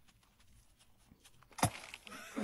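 Near silence, then a rock thrown onto frozen lake ice lands with one sharp impact about one and a half seconds in, followed by a fainter tail.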